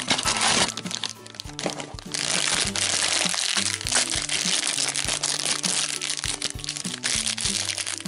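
A cardboard blind box tearing open, then a black foil wrapper crinkling and crackling as a small vinyl figure is worked out of it, over steady background music.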